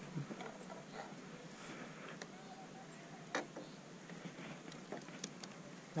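Quiet outdoor background with a few faint, scattered clicks and taps: one sharper click about three and a half seconds in and a small cluster of light ticks near the end.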